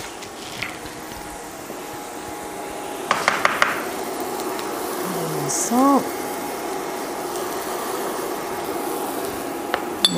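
Onions sizzling steadily in a stainless skillet, a little louder from about three seconds in, with a quick cluster of utensil clicks at that point. A short hum from a voice comes near the middle.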